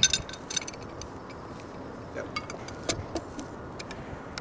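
Light metallic clicks and clinks of a pipe wrench being handled and set against a metal pipe: a quick cluster at the start, then a few scattered ones later, over a steady faint background hiss.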